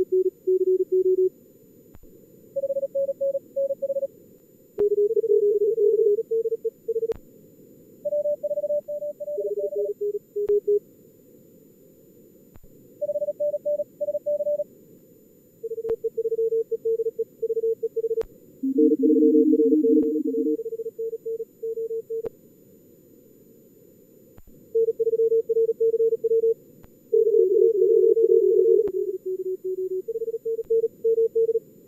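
Software-simulated Morse code (CW) contest traffic: fast keyed tones at around 40 words per minute on several pitches, from low to mid, sometimes two signals at once from the two radios. The tones sit over a steady hiss of filtered receiver noise.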